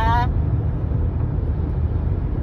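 Steady low rumble of road and engine noise inside a car's cabin while it drives at highway speed.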